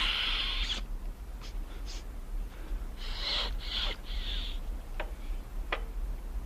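A man snorting a line of powder up his nose: one long hard sniff at the start, then three shorter sniffs about three seconds in. A couple of light clicks follow near the end.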